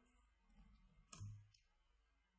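Near silence with a single faint computer mouse click about a second in, as a menu item is chosen.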